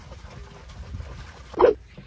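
Liquid running from a plastic jerry can into a rubber bucket as a faint steady wash. About a second and a half in, a man makes one short nasal grunt.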